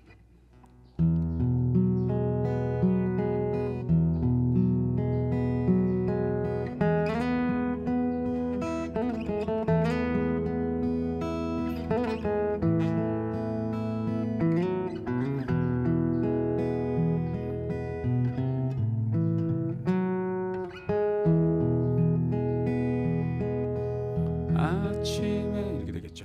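Martin OMC-28E steel-string acoustic guitar played fingerstyle, starting about a second in: picked arpeggios over a thumbed bass line in E, through Eadd9, E, Aadd9 and Am chords, with slides and hammer-ons.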